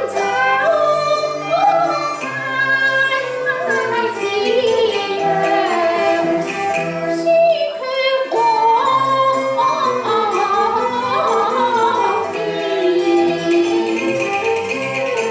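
Cantonese opera song sung with instrumental accompaniment; the vocal line breaks off briefly about eight seconds in, then resumes.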